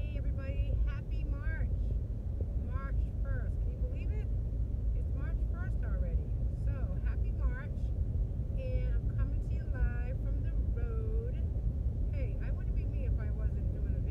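Steady low rumble of road and engine noise inside a moving car's cabin, under a woman talking.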